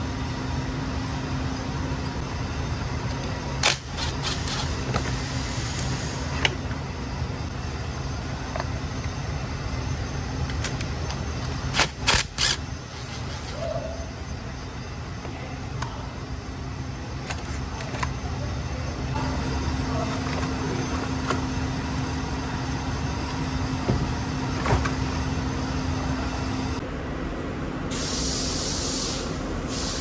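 Steady low workshop drone, with a few sharp clicks and knocks from parts and tools being handled while a car battery's hold-down bracket and cover are taken off. A short burst of hiss near the end.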